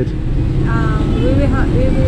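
Street traffic: a steady rumble of passing vehicles, with a voice heard briefly over it.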